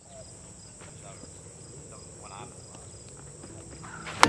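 Faint outdoor ambience of insects: a steady high buzzing runs throughout, with a softer pulsing trill beneath it. A few faint, distant voices come in about two seconds in.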